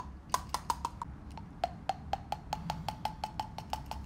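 Small toy figurines tapped quickly on a wooden parquet floor like running footsteps: a fast run of sharp clicks, each with a short ring, speeding up to about six a second, with a slight drop in pitch about one and a half seconds in.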